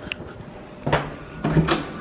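Hotel room door being unlatched and pulled open: a sharp click just after the start, then two louder clunks of the handle and door about a second in and near the end.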